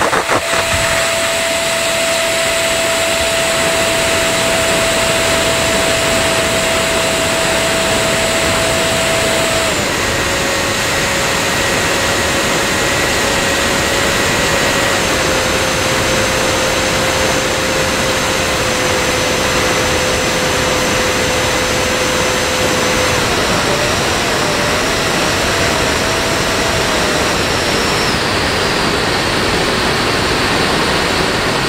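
RC model airplane's motor and propeller at high throttle, heard close up from a camera on the fuselage through heavy wind rush, over a take-off run, climb and turns. A steady whine drops a step in pitch about a third of the way through, sinks a little further, then wavers up and down for a few seconds.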